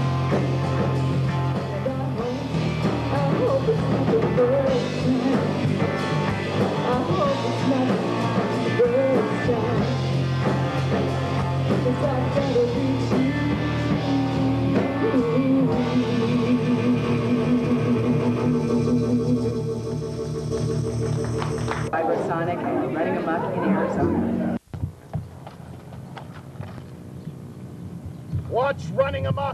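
Live rock band playing: electric guitars, drum kit and a woman singing lead, with a long held chord near the end of the song. The music breaks off suddenly about three-quarters of the way through, leaving a quieter steady background.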